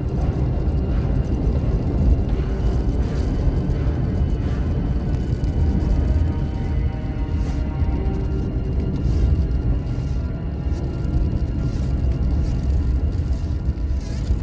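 Dark, ominous background music with long sustained tones over a steady low rumble from the moving car.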